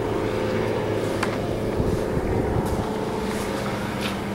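An engine running steadily: a low, continuous hum with no change in pitch.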